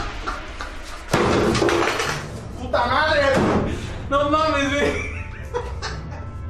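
Excited men's voices shouting, with a sudden loud bang about a second in followed by a second of noise.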